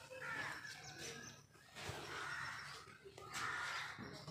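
Birds calling, three spells of harsh calls under a second long.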